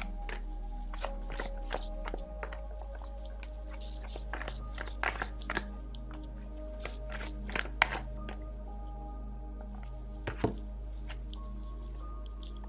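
Tarot cards being shuffled and drawn by hand: a run of irregular crisp clicks and snaps, the loudest about five, eight and ten seconds in, over soft background music with long held tones.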